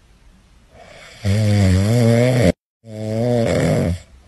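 Small dog asleep on its back, snoring: two long, loud, low-pitched snores, the first cut off suddenly, after a quiet first second.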